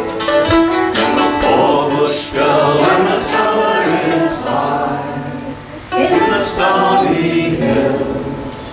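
A man and a woman singing a folk song together, accompanied by a mandolin and an acoustic guitar, with short breaks between sung phrases.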